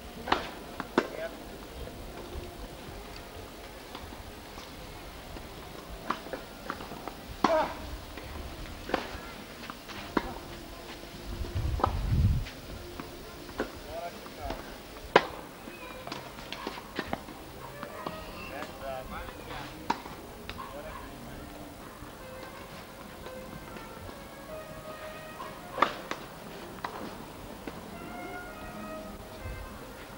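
Tennis ball struck by rackets during a rally: sharp, irregularly spaced pops a second or several apart, over faint voices and music. A brief low rumble about twelve seconds in.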